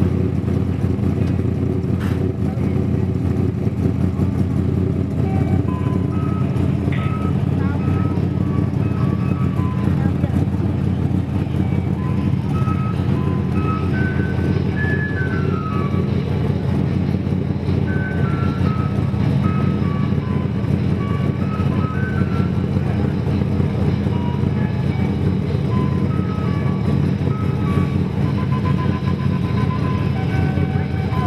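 Vehicle engine running steadily, with a simple tune of short, high beeping notes playing over it.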